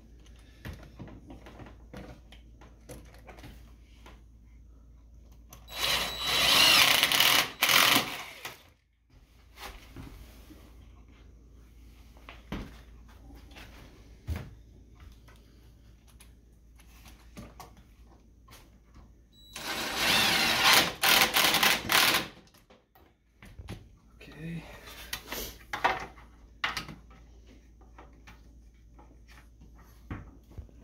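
Cordless drill/driver driving screws into a cabinet's tilt-tray hinge, two loud runs of a couple of seconds each, about six and twenty seconds in, with shorter bursts a little later and small handling clicks between.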